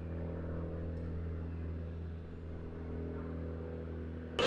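Sci-fi hover vehicle sound effect: a steady, low, humming drone made of several layered pitched tones, with no change in pitch.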